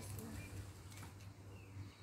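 Faint soft clicks and rustles of a gloved hand pressing bulbs into loose garden soil, over a low steady hum.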